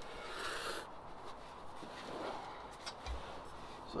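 Quiet rustling and rubbing as a person shifts and turns in a cushioned chair and reaches around, with a short hissy rustle about half a second in and a soft low thump about three seconds in.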